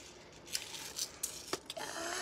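A few light, separate clicks and clinks of a metal necklace chain and pendant being handled.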